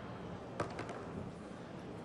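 Pool balls knocking together once with a sharp click about half a second in, with a few fainter ticks after, over steady hall background noise as balls roll on the table.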